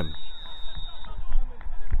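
A long, steady high whistle blast, the referee's whistle for half time, ending about a second in, over a low background rumble.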